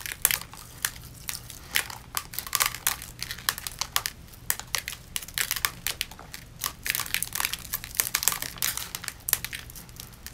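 Glued-on rhinestones being picked and peeled off skin with fingernails: a dense, irregular run of small crackles and clicks, like crinkling.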